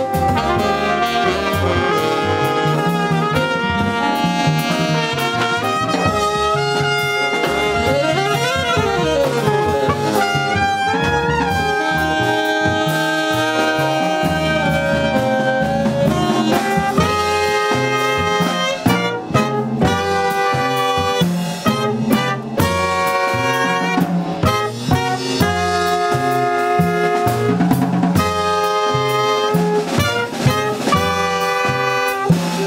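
Jazz sextet playing live: trumpet, tenor saxophone and trombone sound together over double bass and drums. About eight to ten seconds in, the horn lines slide up and down past each other. In the second half the playing breaks into short accented hits.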